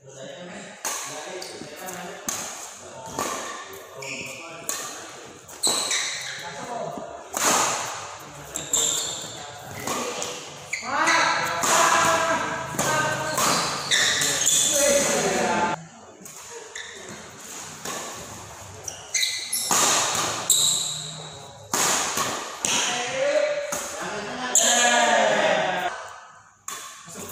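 Badminton doubles rally: rackets striking the shuttlecock and players' feet landing on the court give a run of sharp hits and thuds, mixed with players' voices calling out.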